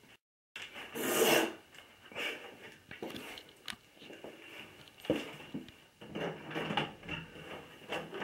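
Handling noise from a handheld camera: irregular rubbing and rustling, with a short rush of noise about a second in and scattered light clicks.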